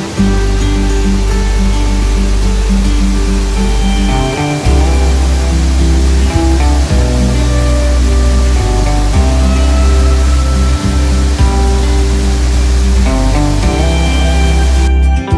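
Background music with sustained bass notes and a steady melody, over the steady rush of a small waterfall.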